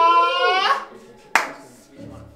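A man's drawn-out shout held on one steady pitch, breaking off under a second in, then a single sharp clap.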